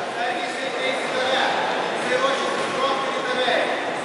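Indistinct chatter of many voices echoing in a large sports hall, steady, with no single voice standing out.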